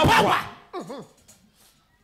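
A voice crying out sharply, a short loud yelp-like cry, followed about a second in by a shorter cry that rises and falls.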